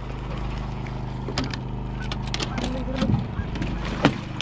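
A small engine hums steadily, with scattered light clicks and knocks. Near the end there is a sharp splash as a freshly shot fish thrashes at the surface.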